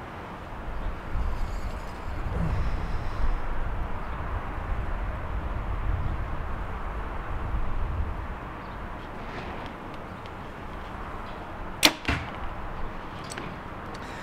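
A PSE Evo NXT 33 compound bow drawn, held and shot: one sharp crack of the string release about twelve seconds in, followed a moment later by a softer knock. A low rumbling noise runs under the draw and hold before the shot.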